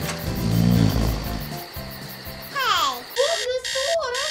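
Cartoon sound effects over background music: a low, drawn-out snore-like sound, then a falling whistle glide, then an alarm-like buzz pulsing about three times a second near the end.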